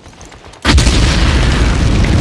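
Film sound of a flamethrower blast. A sudden, loud, steady rush of fire starts about two-thirds of a second in and carries on without a break.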